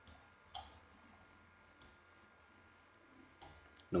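Computer mouse clicking: about five short, sharp clicks spread over a few seconds, the second one the loudest.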